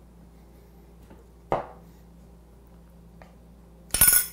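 Quiet kitchen room tone with a faint tick, then a sharp clink near the end as a small kitchen item is set down on the counter.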